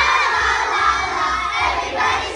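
A group of children singing loudly together, a crowd of young voices entering at once as a phrase begins.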